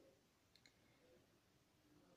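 Near silence: faint room tone, with two tiny clicks close together about half a second in.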